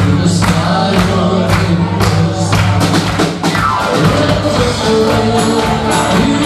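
A live country band playing, with singing over drums, bass, keyboard and electric guitar; the drums keep a steady beat of about two hits a second.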